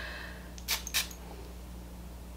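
Two short, crisp clicks about a third of a second apart as a glass perfume bottle and a paper scent strip are handled, over faint room hum.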